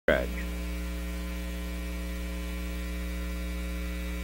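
Low, steady electrical mains hum running through the audio feed, with a brief clipped snatch of voice at the very start.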